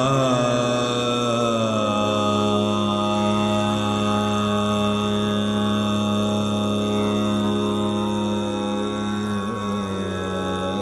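Male Hindustani classical vocalist singing in Raga Jog: he glides down onto one long note and holds it steady, with a small ornamental turn near the end, over a steady drone.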